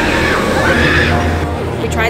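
Riders on the Tron Lightcycle Run roller coaster screaming as the train goes by: a couple of rising-and-falling screams over a steady low rumble.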